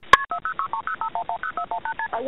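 Telephone signalling tones at the start of a recorded 911 call: a click, then a fast string of short two-note beeps, about nine a second, in narrow phone-line sound.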